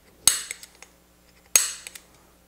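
Spring-loaded automatic center punch with a straight-wall staking tip firing twice, two sharp metallic snaps about a second and a half apart, each with a brief ring. Each snap drives metal of the AR castle nut into the end plate's staking notch, staking the nut.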